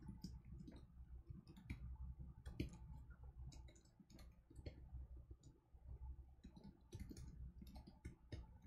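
Quiet typing on a computer keyboard: irregular key clicks, several a second, with a short lull around the middle, over a low steady hum.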